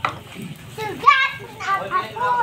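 A child's voice calling out in short high-pitched cries, after a sharp click at the start.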